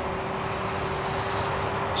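Kukirin G3 Pro electric scooter under way, its rear hub motor alone driving it up a slight incline. A steady low hum runs over wind and tyre rush, and a faint high whine joins about half a second in and fades near the end.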